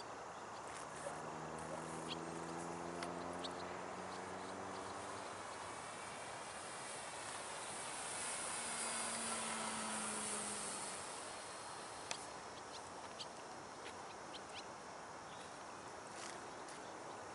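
Radio-controlled P-51 Mustang model plane flying high overhead: a faint hum from its motor and propeller that swells about halfway through, with a tone falling slowly in pitch as it passes, then fades.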